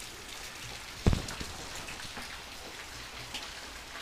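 Heavy rain falling steadily, with water running off a roof spout onto the wet street. A single sharp thump about a second in.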